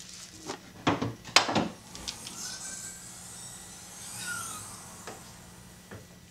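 A few sharp knocks and clicks, the loudest about a second and a half in, followed by a faint rubbing scrape with a sweeping pitch.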